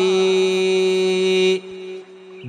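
A Buddhist monk chanting Sinhala kavi bana verse, holding one long steady note that breaks off about one and a half seconds in. A much fainter low tone lingers after it.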